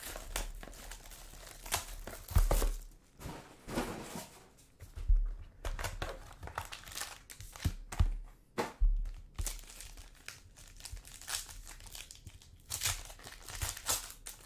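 Plastic wrapper of a trading-card pack crinkling and tearing as it is opened by hand, in irregular bursts, with a few low thuds of things set down on the table.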